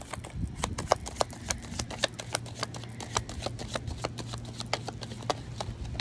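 A deck of reading cards being shuffled by hand, the cards slapping and snapping against each other in quick, irregular clicks, several a second.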